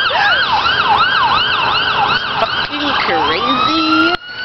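Ambulance siren on the yelp setting, sweeping up and down fast at about four cycles a second, then switching about three seconds in to a slow rising wail.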